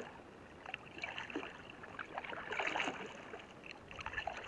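Canoe paddles dipping and splashing in the water, with drips and short trickles. The splashes swell about every second and a half.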